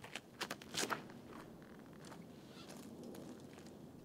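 Faint footsteps and scuffs of a disc golfer's run-up and throw on the tee pad, with a few sharp scrapes in the first second, then quiet woodland background.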